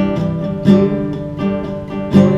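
Nylon-string classical guitar strummed in a rhythm pattern, chords ringing with three strong strokes evenly spaced about two-thirds of a second apart.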